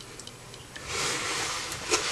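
A few faint light clicks, then from about a second in a cardboard box packed with DVD cases rubbing and scraping as it is handled and set down on a table.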